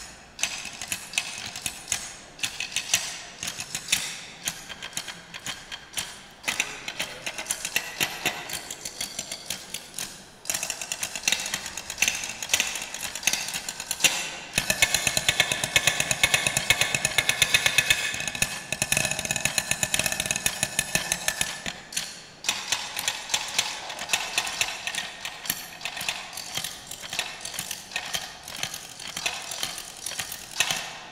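Military drummers playing drumsticks on wooden stool seats: fast, rattling rolls and crisp strokes. The playing is densest and loudest in the middle, with short breaks about ten seconds in and again near twenty-two seconds.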